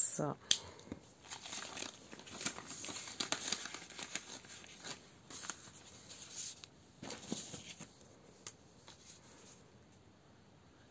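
Paper and card rustling and crinkling in irregular bursts as a savings-challenge card and binder pages are handled and moved about, dying away near the end.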